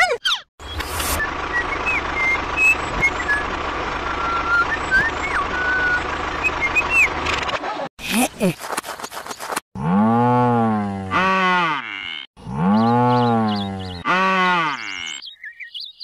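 A cow mooing twice, two long calls that rise and fall in pitch, starting about ten seconds in. Before them comes a steady hum with short bird-like chirps over it.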